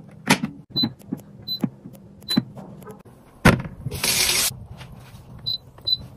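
Plastic kitchen appliances being handled and switched on: a series of clicks and knocks, several with a short high electronic beep like a button press. There is a heavier knock about three and a half seconds in and a half-second hiss right after.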